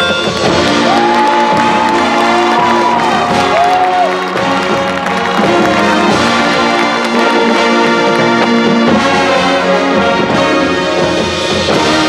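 High school marching band playing loud and unbroken, with brass winds over a front-ensemble percussion section.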